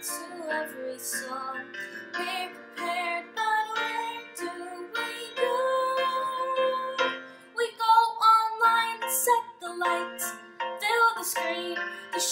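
A girl singing while accompanying herself on an upright piano, her voice carrying the melody over sustained piano chords.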